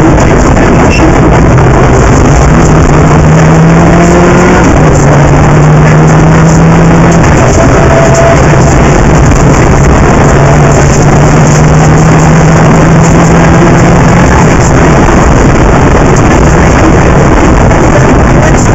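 Rally car engine running hard at speed, heard through a bonnet-mounted camera's microphone: loud and overloaded throughout, with heavy wind and road noise. The engine note holds and shifts in pitch every few seconds.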